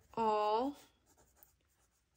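A voice holds one drawn-out word near the start, then a BIC mechanical pencil scratches faintly on a paper worksheet as words are written.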